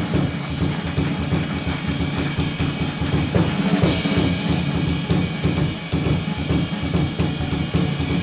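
Jazz drum kit played busily, with quick snare and bass drum hits and rimshots over cymbals, and a cymbal crash about halfway through.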